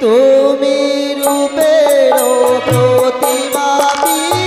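Live Manasa gan stage music: a sustained keyboard melody starts suddenly, and a steady beat of percussion strokes joins about a second in.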